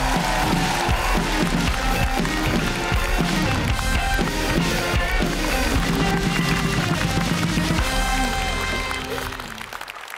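Live band music with a drum kit playing, the show's opening theme, fading out near the end.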